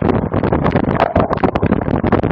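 Cyclocross bike riding fast over bumpy grass, heard through a bike-mounted camera: a loud, dense rumble of wind and tyre noise with constant rattling jolts.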